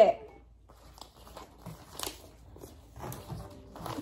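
Faint rustling of paper banknotes being handled, with a few small clicks, one sharper click about two seconds in.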